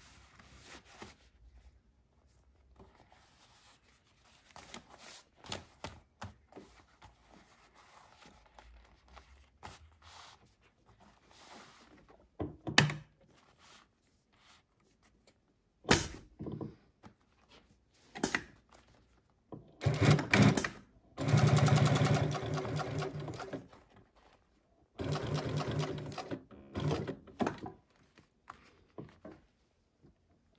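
Dürkopp Adler 867-M single-needle lockstitch flatbed industrial sewing machine with triple (compound) feed, stitching leather in several short runs in the second half. Each run has a fast, even stitch rhythm. Before the runs there is quiet rustling of the leather being positioned, and a few sharp clacks.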